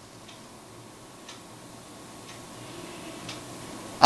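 Faint ticking of a clock, one tick a second, four ticks in all, over quiet room tone with a thin steady hum.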